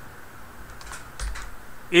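A few quick computer keyboard keystrokes about a second in, typing the letters of a spreadsheet formula.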